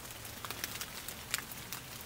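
Light rain falling outdoors, a faint steady patter with scattered ticks of drops.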